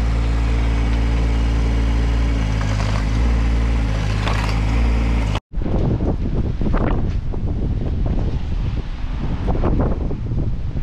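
Bobcat micro excavator's engine running steadily while digging a footing trench. It cuts off suddenly just over five seconds in, and gusty wind buffets the microphone from then on.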